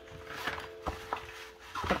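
Faint rustling of a large sheet of book cloth being unrolled and smoothed flat by hand over a cutting mat, with two light taps about a second in.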